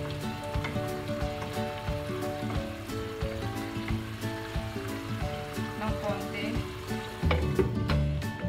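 String beans and fried tilapia sizzling in sauce in a nonstick wok, stirred with a wooden spatula, over background music. Near the end the glass lid is set on the pan.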